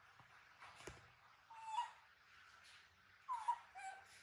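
Baby macaque crying with short, high calls: one a little before two seconds in, then two more close together near the end.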